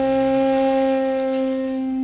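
A single sustained musical note, steady in pitch and fading slowly, used as a sound effect in a stage comedy scene.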